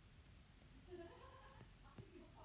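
Near silence: room tone, with a faint, brief pitched sound about a second in.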